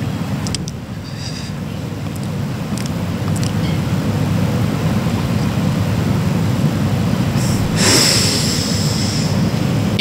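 Steady low rumbling background noise that slowly grows louder, with a few faint clicks early on and a short hiss about eight seconds in.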